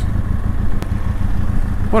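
Motorcycle engine running at low road speed, a steady low drone, heard from the rider's own bike.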